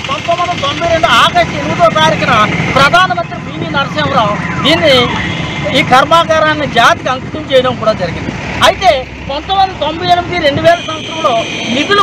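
A man speaking loudly in Telugu, reading out a statement, over a steady low background rumble.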